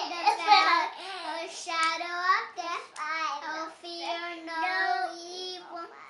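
A young girl's voice reciting a memorized psalm in a sing-song chant: phrases on a fairly level pitch with short breaks between them.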